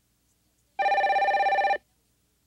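Telephone ringing: a single electronic ring, a fast, even trill lasting about a second, starting about a second in.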